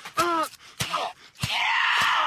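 A person crying out: a short moan that falls in pitch, a few sharp knocks, then a long high scream that begins about one and a half seconds in.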